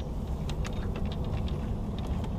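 Light, irregular clicking and ticking from a baitcasting fishing rod and reel being handled in a boat's rod holder, over a low steady rumble.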